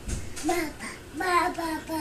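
A toddler babbling in a sing-song voice: a short "ba" about half a second in, then a run of several "ba" syllables from just past one second.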